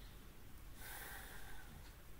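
A short, faint breath out through the nose about a second in.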